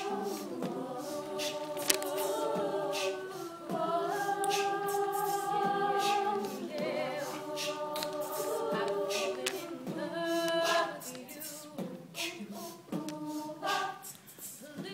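Female a cappella choir singing held chords that change every couple of seconds, with vocal percussion ticking out a beat over them.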